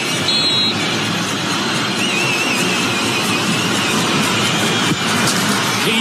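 Stadium crowd noise during a football penalty kick, a dense steady roar. Shrill wavering whistles rise and fall above it, with a short high whistle about half a second in.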